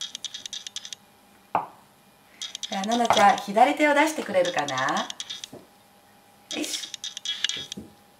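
Kitchen knife cutting through a block of tofu and clicking against a wooden cutting board: a few light clicks at the start and a single sharp knock about a second and a half in, with small handling clicks near the end.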